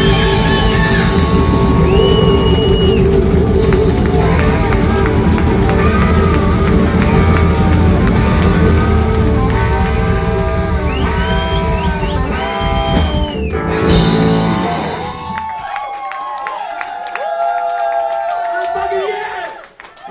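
A live rock-and-roll band playing loudly, with drums, bass and electric guitar, and bent high notes riding on top. About fourteen seconds in the song ends on a final crash. The band drops out, leaving crowd voices and cheering.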